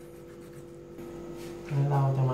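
Kitchen knife scraping and cutting through a fish on a wooden chopping board: faint scraping with a few light clicks, over a steady low hum. A man's voice comes in near the end.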